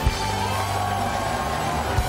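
Show theme music: a drum hit at the start, then a held chord, with a studio audience cheering and clapping beneath it.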